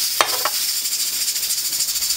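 A steady, high-pitched hiss with a fine rattling texture runs throughout. A ceramic bowl clinks once, with a short ring, as it is set down just after the start.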